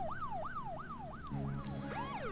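Electronic siren sounding quietly in a fast yelp, its pitch sweeping up and dropping back about three times a second.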